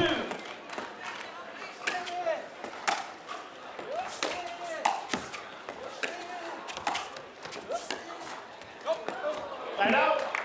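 Pickleball rally: paddles striking the plastic ball with a sharp pop roughly once a second, with short squeaks from shoes on the hard court between the hits.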